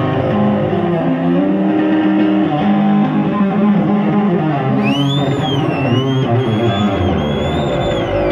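Electric bass guitar, a Yamaha Attitude, played solo live: a quick run of changing notes. About five seconds in, a high, wavering whistle-like tone glides up over it and holds until near the end.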